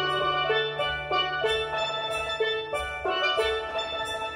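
Steel band playing: an ensemble of steel pans sounding quick pitched notes over a held bass note, with drum-kit cymbal strokes keeping a steady beat.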